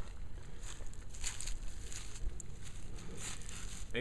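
Footsteps rustling through grass, coming closer to the microphone, over a steady low rumble.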